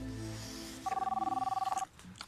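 Soft background music, then a telephone rings once for about a second, starting a little under a second in: a loud, rapidly trilling ring of two notes.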